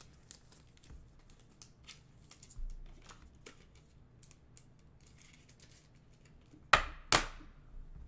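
Trading cards and plastic card sleeves being handled on a table: faint rustling and small clicks throughout, with two sharp taps about half a second apart near the end.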